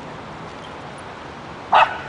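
A dog barks once, a single short bark near the end.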